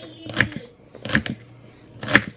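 Kitchen knife chopping celery on a wooden cutting board: sharp knocks of the blade hitting the board about every three-quarters of a second, with a quick double strike about a second in.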